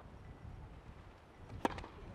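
A tennis racket striking the ball on a serve: one sharp crack about one and a half seconds in, over faint outdoor background.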